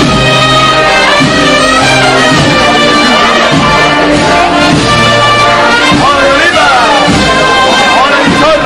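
A brass band playing a processional march, loud and steady, with long held notes changing every second or so.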